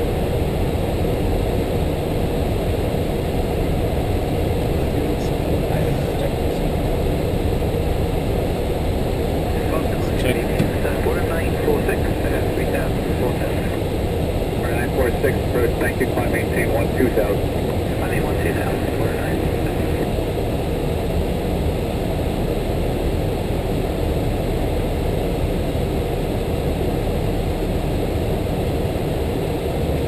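Steady low rushing noise inside the flight deck of an Airbus A330-300 in flight, from its engines and the airflow over the airframe. Faint, muffled voices come through partway in.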